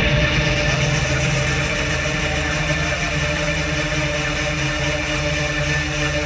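Electronic trance/techno track played loud over a club sound system and recorded from within the crowd, in a breakdown. The heavy beat has fallen back and a steady, held synth chord sustains.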